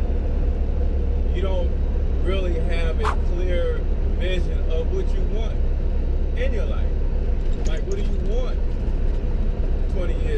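A man talking over the steady low drone of a semi-truck cab on the move, engine and road rumble constant underneath.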